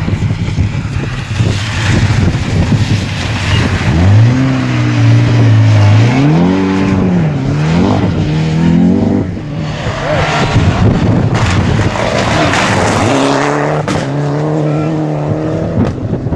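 Rally car engine revved hard, its pitch climbing and dropping through several gear changes, over tyre and gravel noise on a wet dirt road. The revving eases off near the middle and picks up again near the end.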